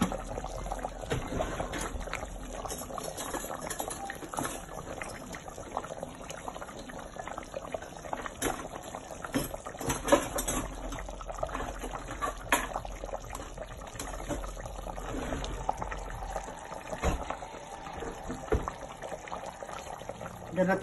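A meat stew in a stainless steel pot on the stove bubbling at a simmer, with irregular small pops and a few louder ones.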